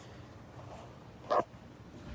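A dog barks once, a single short bark about a second and a half in.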